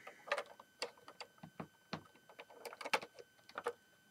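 Plastic LEGO bricks clicking and knocking as a section that has come off the model is handled and pressed back onto it. Scattered light clicks, with a quick cluster of louder ones about three seconds in.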